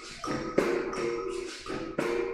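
Berimbaus playing a capoeira rhythm: sharp strikes on the steel string, each ringing with a short pitched twang, repeating a few times a second in a steady pattern.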